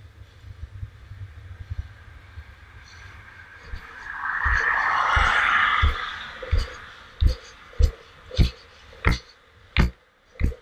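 Skateboard rolling on asphalt: a low wheel rumble, a loud rushing noise swelling about four to six seconds in, then a regular run of sharp clacks, a little under two a second, as the board rides over cracks in the path.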